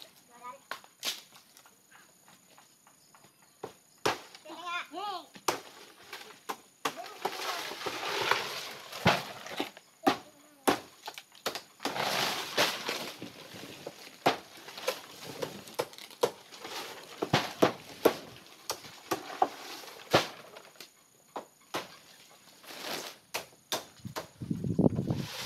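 Irregular sharp knocks of a blade chopping through fan-palm leaf stalks, with dry rustling swishes of the big stiff leaves as they are pulled and fall, loudest about a third of the way in and again halfway.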